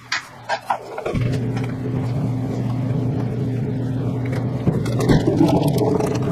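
A few light kitchen knocks, then about a second in a steady electric motor hum switches on and keeps running.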